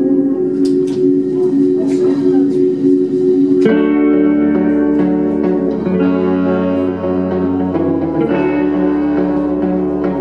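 Indie rock band playing live, an instrumental passage without vocals led by electric guitar over held chords. About four seconds in the sound fills out, with deeper notes joining beneath the guitar.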